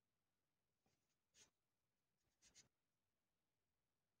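Near silence, broken by faint, brief rustles of cotton thread being worked on a metal crochet hook, once about a second and a half in and again at about two and a half seconds.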